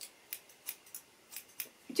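Hair-cutting scissors snipping short hair held up between the fingers: several separate, crisp snips at an uneven pace.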